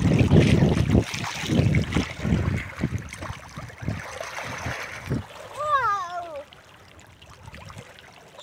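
Water splashing irregularly as children kick and thrash in shallow river water, loudest in the first few seconds. A brief high-pitched voice sound with a few falling glides comes about six seconds in, then it goes quieter.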